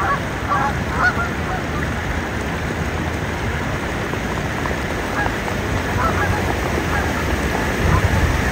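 Canada geese honking, a cluster of calls in the first second and more from about five seconds on, over a steady rush of water. Splashing as swans and geese run across the water to take off.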